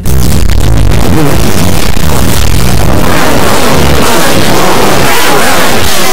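Heavily distorted, clipped audio: a very loud, dense wall of noise with a heavy rumbling low end. It starts suddenly and stays at one flat level, the cartoon's soundtrack pushed through a distortion effect.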